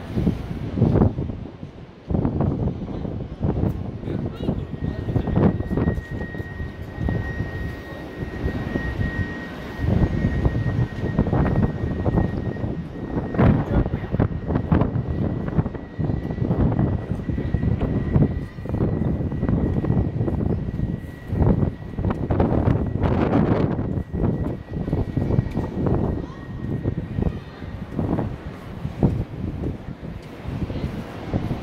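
Wind buffeting a phone's microphone: a gusty, uneven rumble, with a faint steady high tone running through most of it.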